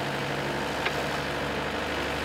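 Takeuchi TB175 compact excavator's diesel engine running steadily while the arm and bucket swing, its note shifting slightly near the end. A faint click about a second in.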